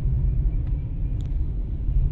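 Steady low rumble of a moving car, heard from inside its cabin, with a couple of faint small ticks.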